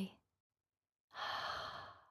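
A person sighing out once, slowly and breathily, about a second in: a deliberate, relaxing out-breath that fades away over about a second.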